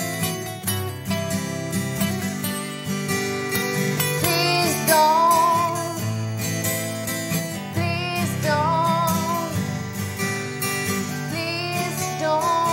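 Two acoustic guitars playing together, steady strummed and picked chords. A wavering higher melody line comes in a few times, around four seconds in, around eight seconds in and near the end.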